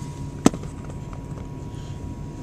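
A single sharp knock about half a second in, over a steady low hum with a faint high whine, typical of a handheld camera being moved and bumped.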